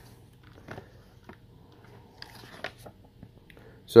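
Faint rustling and a few light, scattered clicks of a cardboard coin folder being opened out and handled, over a faint low hum.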